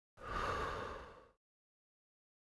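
A single breathy exhale lasting about a second, starting suddenly and fading out.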